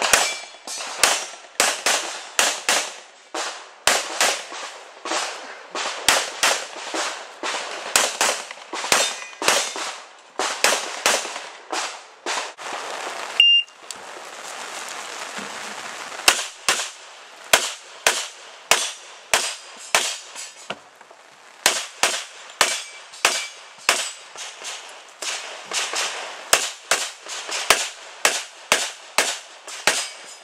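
Pistol shots fired in rapid strings, several a second, during a practical shooting stage, with a short pause of about two seconds a little before halfway.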